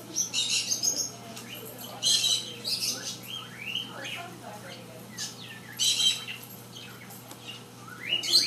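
Small birds chirping in repeated bursts, with several short rising calls, over a low steady hum.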